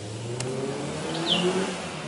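A motor vehicle's engine running past, its pitch edging slightly upward over a haze of road noise. A short high falling chirp sounds a little over a second in.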